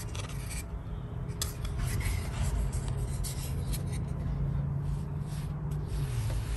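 A wide flat wash brush sweeping and scrubbing across semi-sized Jen Ho paper in a series of short strokes, a dry rubbing, rasping sound of bristles on paper as a wash is laid along the bottom of the painting.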